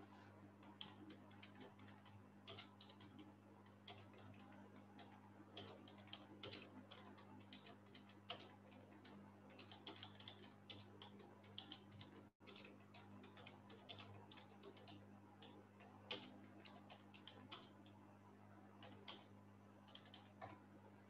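Near silence: a steady low hum with faint, irregular small clicks scattered throughout.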